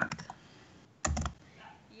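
Faint computer keyboard typing: a few keystrokes at the start and a short cluster of key clicks about a second in.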